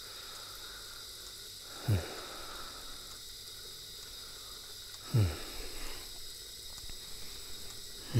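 Horror-film sound design: two short booming hits, each a quick downward sweep into deep bass, about three seconds apart, over a faint steady high drone.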